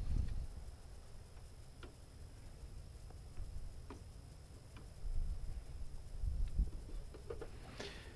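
Low wind rumble on the microphone, louder near the start and again in the second half, with a few faint ticks as the Fiamma F80s awning's hand crank is turned to wind it out.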